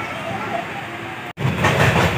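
Passenger train running along the track, heard from inside a sleeper coach as a steady rumble. The sound drops out abruptly about a second and a half in, then returns louder.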